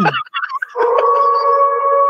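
A voice trails off, then about a second in a steady electronic tone starts and holds, several pitches sounding together without wavering.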